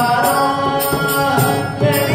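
Tamil devotional bhajan: a male voice singing with harmonium and mridangam accompaniment.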